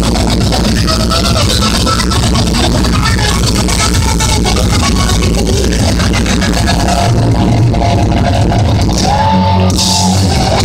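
Live hard rock trio playing an instrumental passage at full volume: distorted electric guitar, electric bass and drum kit. In the last few seconds there are held guitar notes over the bass.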